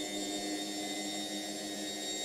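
A steady hum made of several held tones, from low to high, over a light hiss, even throughout.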